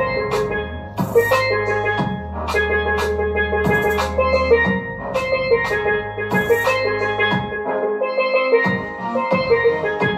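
Steelpan played in a quick melodic line of struck, ringing metallic notes over a backing track with a deep bass line and drum beat.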